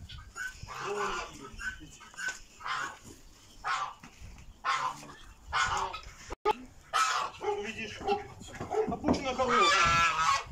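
Domestic poultry calling: a string of short calls roughly every second, and a longer, louder call about nine seconds in.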